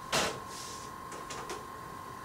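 Handheld spray bottle spritzing water onto a paint palette: one short hiss of spray just after the start, followed by a few faint clicks.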